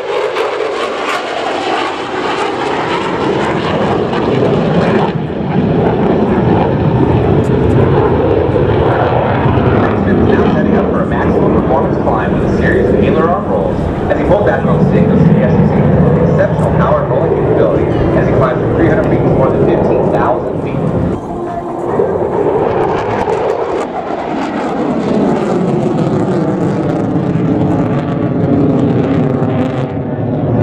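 F-16 fighter's jet engine running loud and steady as the jet flies its display past and away. In the last several seconds the noise takes on a sweeping, phasing whoosh.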